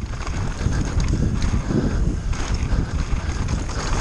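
Giant Reign mountain bike ridden fast down a dirt trail: wind rumbling on the microphone, tyres rolling over dirt, and the chain and frame rattling and knocking steadily over the bumps.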